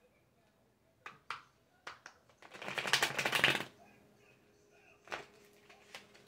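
A deck of tarot cards being shuffled by hand: a few sharp taps and snaps of the cards, then a quick, dense crackling run of cards fluttering together for about a second, starting about two and a half seconds in.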